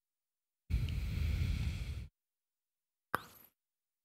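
A muffled rush of low rumbling noise on the microphone for about a second and a half, like breath or handling close to it, then a single short click near the end.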